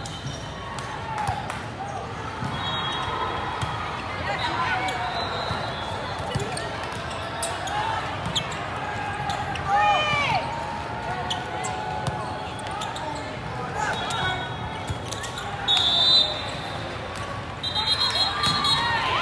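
Volleyball match in a large echoing hall: players and spectators talking and calling out, with the sharp smacks of the ball being hit, and a referee's whistle blowing briefly about three seconds in and again near the end.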